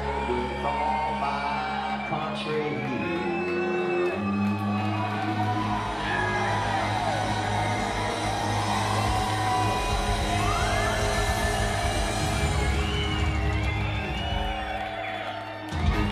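A live band with banjo and upright bass playing an instrumental passage, with steady low bass notes under the melody. The music stops suddenly just before the end.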